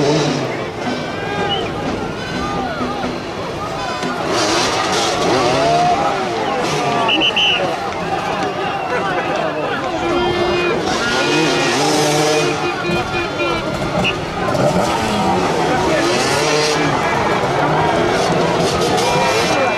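Several motoball motorcycles' engines idling and revving up and down together, with crowd chatter underneath.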